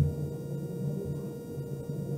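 Room noise through the camera microphone: a dull low thud right at the start, then a muffled low rumble with a steady faint hum.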